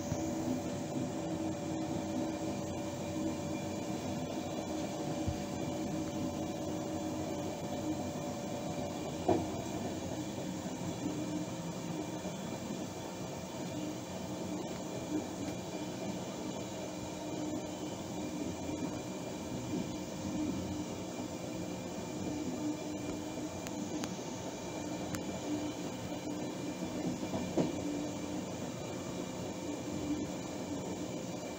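A train in motion heard from inside the driver's cab: steady running noise with a humming drone, and a few sharp clicks from the wheels on the track.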